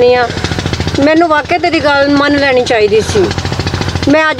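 A small engine running with a rapid, even pulsing beat, under voices talking.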